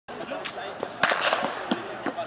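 A single starting-pistol shot about a second in, a sharp crack with a brief ring after it: the signal that starts the race. Voices talk in the background.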